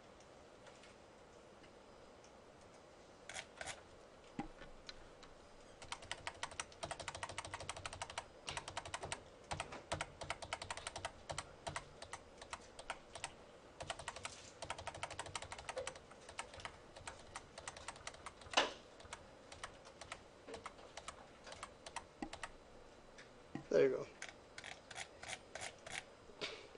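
Faint, rapid clicking of computer keys and mouse as a PDF is paged through, many clicks a second in long runs, with a louder single click in the middle and a brief low sound near the end.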